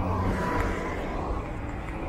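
City street traffic: a steady hum of car engines and tyre noise.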